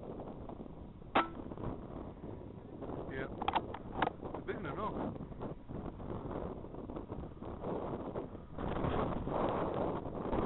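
Wind buffeting the microphone, growing louder near the end. A single sharp click about a second in and a few more clicks around three to four seconds cut through it.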